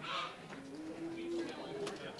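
Low murmur of people's voices in a room, with one short, low sound held for about half a second in the middle, like an 'ooh', and a sharp click shortly before the end.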